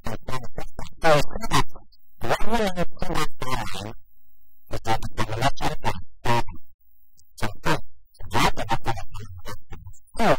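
A man's voice talking in phrases with short pauses between them.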